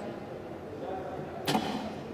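A thrown boccia ball strikes the court with a single sharp knock about one and a half seconds in, over a low murmur of voices in the hall.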